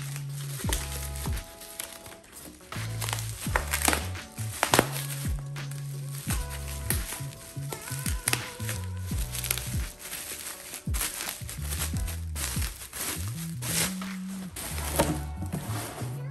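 Bubble wrap and plastic packing crinkling in irregular crackles as they are handled, over background music with a steady bass line.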